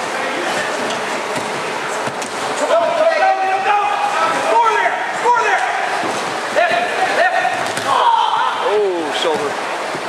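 Wrestling room practice noise: a steady hubbub of many wrestlers drilling, with scattered thuds of bodies and feet on the mats. Raised voices call out from about three seconds in to near the end.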